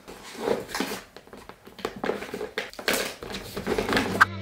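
Hands rummaging in a tote bag: irregular rustling and small knocks of things being moved about inside, with the bag's material shifting as it is handled.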